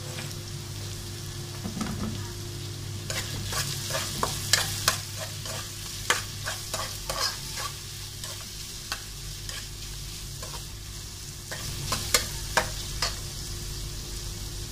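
Chopped ginger and red onion sizzling in oil in a metal wok, with a metal spoon stirring them and clicking and scraping against the pan, the strokes coming thick and fast through most of the middle of the stretch.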